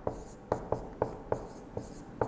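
Marker pen writing on a whiteboard: about six short, sharp strokes and taps as letters are drawn.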